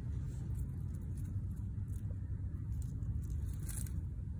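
Steady low outdoor background rumble, with a few faint brief rustles, the loudest near the end.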